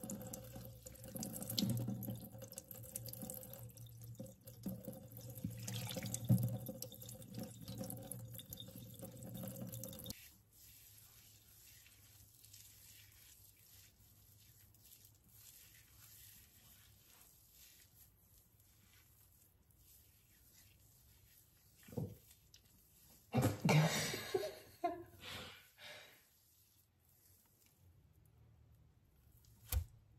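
Water poured from a jug over a head of wet hair, splashing and dripping into a stainless-steel kitchen sink; the pouring stops abruptly about ten seconds in. After a quiet stretch, a few short, louder squeaky rubbing sounds come from hands working the squeaky-clean rinsed hair.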